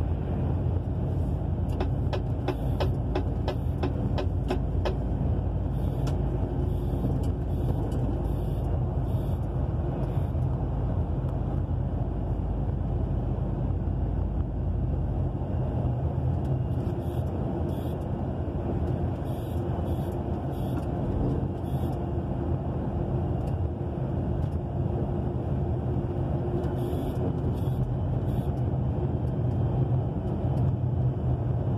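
Truck cab interior while cruising on the highway: a steady low diesel engine drone with road and tyre noise. A short run of light ticks, about three a second, comes a couple of seconds in.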